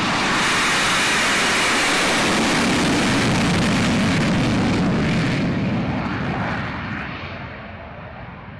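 Saab F-39E Gripen fighter's single General Electric F414 turbofan running at takeoff thrust as the jet rolls down the runway past the microphone; the loud, steady jet noise fades over the last few seconds as the aircraft moves away and lifts off.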